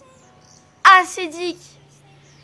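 A boy's short wordless vocal reaction, a single loud sound of about half a second with a wavering pitch, a little under a second in. Faint high chirping sounds in the background, and a low steady hum comes in near the end.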